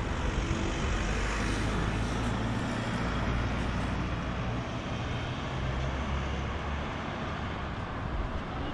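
Steady city street noise from road traffic, with the low hum of a vehicle engine coming and going.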